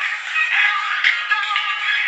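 Music with high-pitched, synthetic-sounding singing; the sound is thin and tinny, with no bass.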